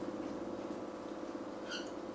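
A steady low machine hum, with one brief high squeak near the end.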